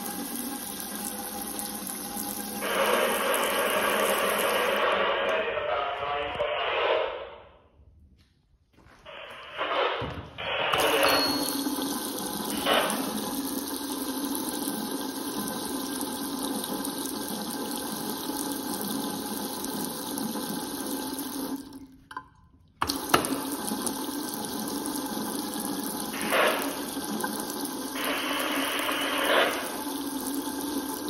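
Water running from a chrome two-handle bathroom faucet in a thin stream into a sink basin and its drain: a steady splashing rush. It grows louder for a few seconds near the start and again near the end, and drops away almost to nothing twice, once about a third of the way in and once about three quarters through.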